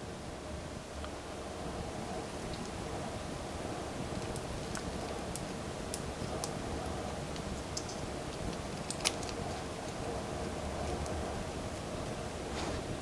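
Faint scattered clicks of small plastic parts being handled and fitted, as a 1/6-scale plastic helmet is pressed onto a figure's head, with one sharper click about nine seconds in, over a steady low room hum.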